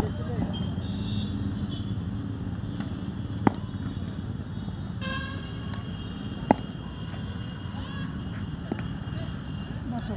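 Two sharp cracks of a cricket bat striking a cricket ball for catching practice, about three seconds apart, with a fainter knock near the end. Steady background noise runs underneath, with a held high tone in the second half.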